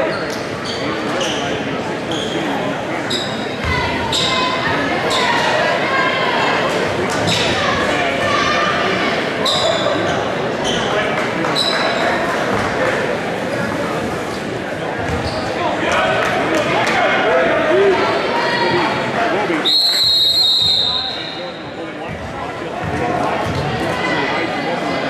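Gymnasium crowd chatter with short high squeaks of sneakers on the hardwood court and a basketball bouncing. About twenty seconds in, a referee's whistle sounds one long high blast, and the crowd noise drops after it.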